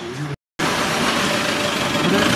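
A motor vehicle engine idling, a steady hum under a broad hiss. It starts abruptly after a brief total dropout about half a second in.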